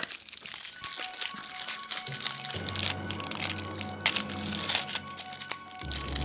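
Thin plastic toy wrapping crinkling and crackling in short, irregular bursts as it is pulled open by hand, over background music.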